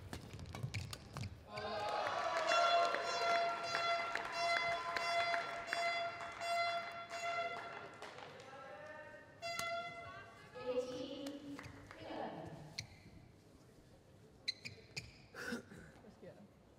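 Sports-hall noise between rallies: a high, held tone with many overtones sounds for about six seconds starting about two seconds in, followed by a few shorter notes. Voices and scattered clicks come after.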